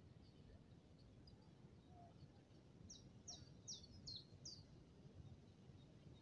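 Near silence with faint bird calls: a run of five short, high, falling chirps about three seconds in, over a faint background hush.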